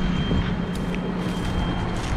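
John Deere 6155M tractor engine idling with a steady low hum, while a thin, high electronic warning tone sounds steadily and stops shortly before the end.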